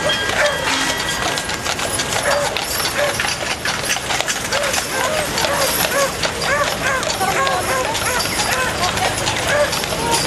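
Horse hooves clip-clopping on wet pavement as a two-horse team pulls a horse-drawn fire pumper past, with crowd voices in the background.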